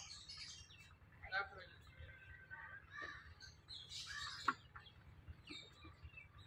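Faint scattered bird chirps and a chicken clucking, with a low steady hum underneath.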